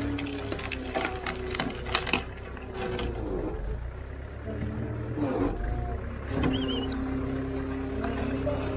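Engine-driven hydraulic log splitter running with a steady hum, its ram forcing a fibrous tree stump against the wedge. The wood cracks and splinters in several sharp snaps during the first three seconds.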